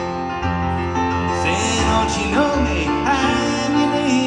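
Grand piano played live in a slow country-folk song, with a voice singing sustained, bending notes over it in the middle.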